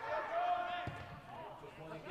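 Football players shouting to each other on the pitch, with a single thud of the ball being kicked just before a second in.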